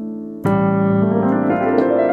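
Nord Stage digital piano playing: a held chord dies away, a new low chord is struck about half a second in, then the right hand runs up a scale in quick rising notes over it.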